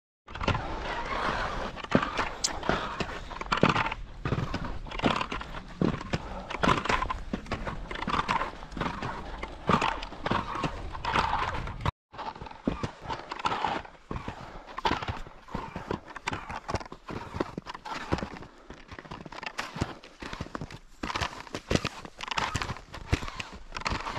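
Touring skis on climbing skins sliding up a snow skin track, with ski poles planting, in a steady rhythm of crunching strides about once a second. The sound cuts out briefly just over halfway through, then carries on quieter.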